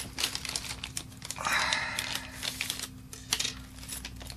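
Clear plastic parts bag crinkling as it is handled and opened, densest about a second and a half in. Light clicks and taps sound throughout as small parts are picked out and set down.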